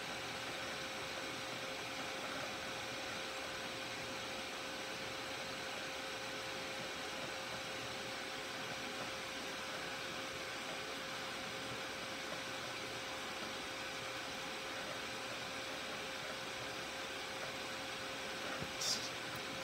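Old desktop PC running: a steady whir of its fans and drives with a constant faint hum.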